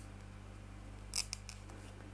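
Crochet hook working fine cotton thread: a brief crisp rasp about a second in, followed by two small clicks, over a faint steady hum.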